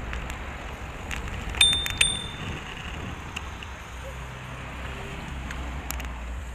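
A bicycle bell rung twice, two bright dings about half a second apart, each ringing on briefly. Steady low wind and road rumble from riding runs underneath.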